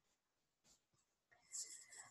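Near silence: room tone, with a faint short hiss near the end.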